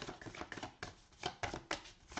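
A deck of tarot cards being shuffled by hand, a quick irregular run of card clicks and slaps.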